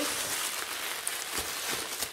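Plastic wrapping on a box of tea crinkling as it is handled and opened: a steady rustle with a few sharper crackles about halfway through.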